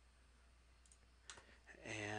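Computer mouse clicks: a sharp pair of clicks about 1.3 s in, a few lighter ones after, against near silence. A low hummed voice sound starts just before the end.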